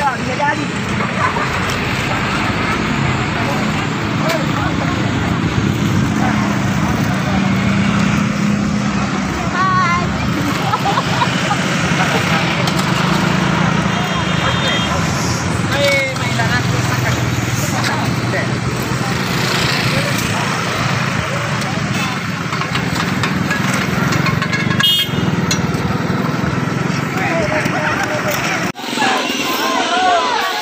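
A vehicle engine running steadily with a low hum, under indistinct outdoor chatter from a crowd of people working. The hum breaks off abruptly shortly before the end.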